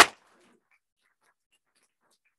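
A voice cuts off in the first instant, then near silence with a few faint, scattered clicks.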